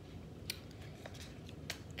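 Faint handling clicks from a small cardboard box and a paper note: two sharp ticks a little over a second apart, with a weaker one between, over low room hum.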